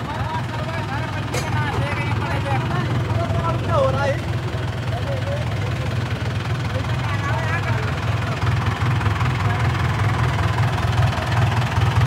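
Mahindra 575 tractor's diesel engine running steadily as the tractor drives along, with a low, even throb throughout.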